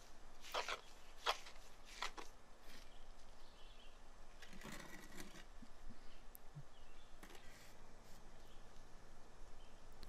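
A magnesium hand float drawn a few times over freshly placed concrete, short scraping strokes about two-thirds of a second apart near the start, then faint outdoor quiet.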